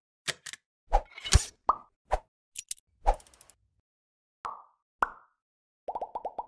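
Animated-intro sound effects: a string of short cartoon pops and plops, about ten in all, spaced unevenly. The loudest, about a second and a half in, comes with a short whoosh, and there is a brief silent gap in the middle.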